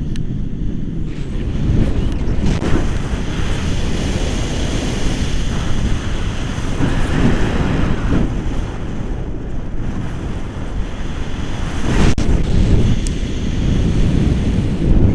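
Wind buffeting an action camera's microphone in flight on a tandem paraglider: a loud, gusting rush of air that swells about two seconds in and again near the end.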